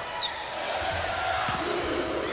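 Indoor volleyball rally: steady crowd noise in the gym, a brief high sneaker squeak on the court near the start, and one sharp hit of the ball about one and a half seconds in.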